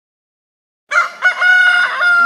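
Rooster crowing, a cock-a-doodle-doo that starts about a second in after silence. Two short notes are followed by a long held final note.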